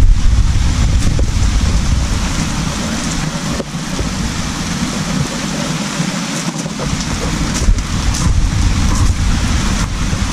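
Steady rain hiss with wind buffeting the microphone: a rough low rumble under the hiss fades about halfway through and builds up again toward the end.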